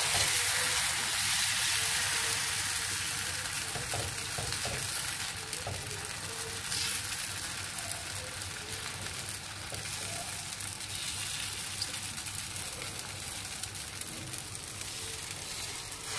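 Brown rice dosa batter sizzling on a hot cast-iron tawa as it is spread in circles with a ladle. The sizzle is steady and grows gradually quieter.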